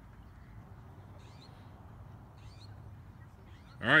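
Quiet open-air background with a faint low steady rumble and two faint, short high-pitched calls, about a second in and again about two and a half seconds in. A man's voice starts just before the end.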